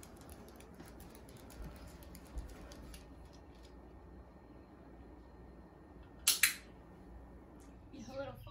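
A puppy's claws ticking lightly on a hardwood floor as it scampers about, then two sharp clicks in quick succession a little over six seconds in, the press and release of a dog-training clicker.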